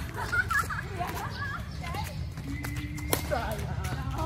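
Badminton rackets striking a shuttlecock during an outdoor rally: a series of sharp, light clicks, the loudest about three seconds in. Players' voices call out over a steady low city rumble.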